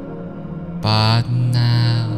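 Ambient meditation music with sustained tones; about a second in, a deep chanted voice comes in loudly, holding a low note, breaking briefly and then holding it again.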